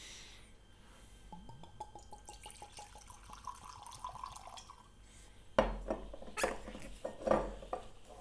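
Whisky poured from a bottle into a glass tumbler: quick glugging from the bottle neck, then a steadier pour into the glass. Past the middle come a sharp knock, the loudest sound, and a few softer knocks, as the bottle is stood on the table and its plastic stopper is pressed back in.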